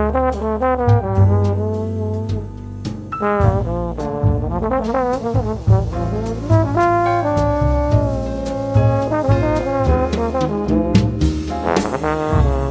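Big band jazz: trombones play a moving melodic line over bass and drums, with cymbal and drum hits throughout.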